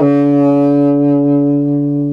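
Saxophone moving to a new low note right at the start and holding it as one long steady tone.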